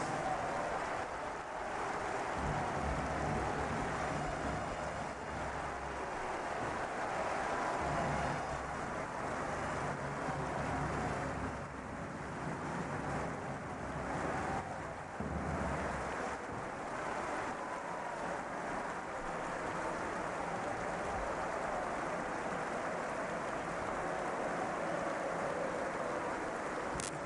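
Large arena crowd cheering and shouting in one continuous wall of noise, with a few louder swells.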